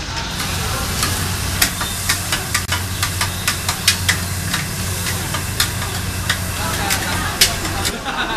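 Metal spatula scraping and clanking against a wok while fried rice is stir-fried, in quick irregular strikes, over sizzling and a steady low hum.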